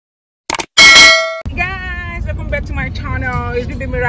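A subscribe-button animation sound effect: a short click, then a loud, bright bell-like ding that rings for about half a second and cuts off suddenly. A woman's voice then starts talking over a low rumble.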